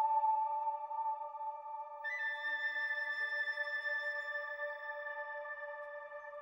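Orchestral film-score music: a soft, held chord, with a higher note joining about two seconds in and a few quiet lower notes beneath, the whole slowly growing quieter.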